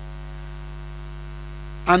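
Steady low electrical mains hum through the microphone and sound system, unchanging, with a man's voice starting just at the end.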